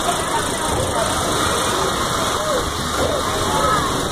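A steady, loud mechanical noise like an engine running, unbroken throughout, with a few faint voices in the background.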